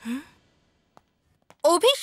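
A woman's short breathy sigh, followed by about a second of near silence before she starts speaking near the end.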